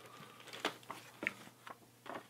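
Faint handling sounds of a plastic bag and a paper card: a few soft crinkles and light clicks spread over the two seconds, over quiet room tone.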